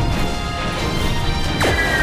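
Animated battle soundtrack: background music layered with crashing impact sound effects. About one and a half seconds in, a quick falling sweep starts along with two high held tones as an energy-blast effect comes in.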